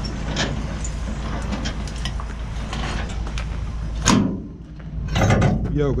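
Handling noise of a gloved hand on a flatbed trailer's metal side rail, with scattered small clicks and scuffs against a steady low rumble. A single sharp knock comes about four seconds in, and another short scuffle follows just after five seconds.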